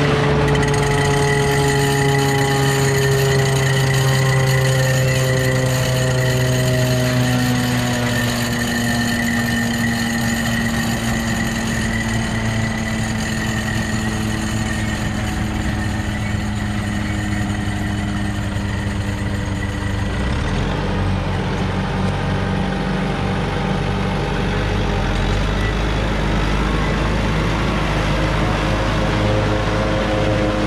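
Tractor engine running with a PTO-driven trailed forage harvester chopping standing corn for silage. The machine's pitch falls slowly over the first fifteen seconds or so, then it runs steadily with a heavier low rumble from about twenty seconds in.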